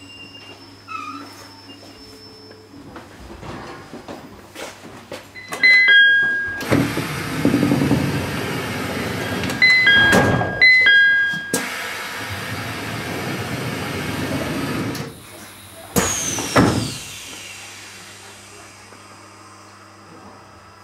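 Commuter train stopped at a station with its doors working: a two-tone door chime, a loud rush of noise lasting several seconds, the chime twice more, then a sharp clunk with a falling whine about three quarters of the way in.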